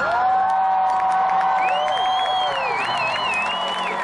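Festival crowd cheering, whooping and clapping over a live indie rock band's music. A long note is held early on, and a high wavering cry runs from about a second and a half in.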